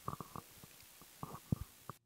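A quiet room with a few faint, short clicks and soft murmurs scattered through it.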